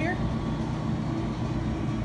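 A steady low mechanical rumble with no distinct events.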